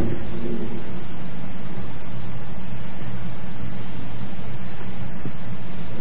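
Steady hiss with a faint low hum: the recording's background noise, with no speech over it.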